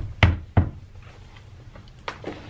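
Three quick knocks in the first half-second or so as a laptop is shut and handled against a desk, then little more than room background.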